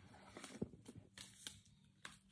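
Faint handling sounds: a few soft clicks and rustles as a small packet of Clorox wipes is pulled out of a handbag's back zipper pouch.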